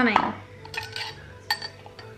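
Metal-on-glass clinks as a stainless steel milk frother jug and a spoon are handled over a glass while frothed oat milk is poured: a few light clinks, then one sharp ringing clink about one and a half seconds in.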